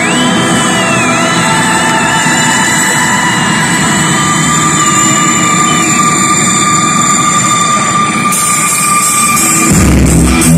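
Live rock band's intro through arena PA, phone-recorded: a loud, sustained drone of held guitar and keyboard tones with a high note that wavers and then holds steady. Just before the end the full band comes in with bass and drums.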